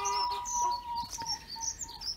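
Birds calling: one long, steady call that fades out a little after a second in, with short high chirps over it.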